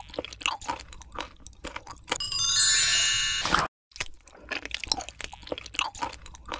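Crunchy biting and chewing eating sounds, a quick run of crisp crunches. About two seconds in, a loud sparkling chime effect cuts in for about a second and a half, then the crunching carries on.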